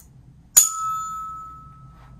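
A tuning fork struck once, about half a second in, with a sharp metallic strike, then ringing with one clear tone that fades away over about a second and a half. It is being set vibrating for a vibration-sense test.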